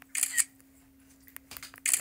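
Smartphone camera shutter sound of a screenshot being taken, heard twice: once just after the start and again near the end, over a faint steady hum.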